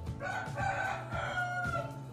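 A single long animal call lasting nearly two seconds, with a short break about a second in, over soft background music.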